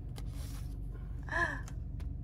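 A short gasp about one and a half seconds in, over the steady low rumble of a car cabin on the move.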